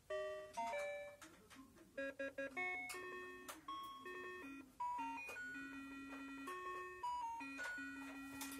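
Oregon Scientific Star Wars Clone Wars toy laptop playing a simple electronic melody from its small speaker: a string of short beeping notes, quicker at first and then longer held notes.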